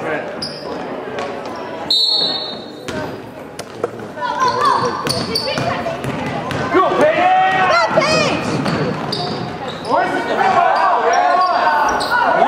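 A basketball being dribbled on a hardwood gym floor, short knocks that ring off the walls of a large gym, with voices calling out over them.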